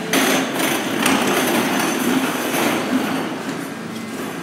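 New York City subway train standing at the platform with its doors open: the steady running noise of the car's equipment, with a few clattering knocks in the first second.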